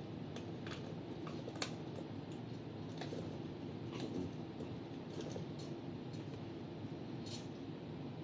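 Blueberries tipped from a plastic clamshell into a blender jar: scattered light clicks and taps of berries and plastic, over a steady low hum.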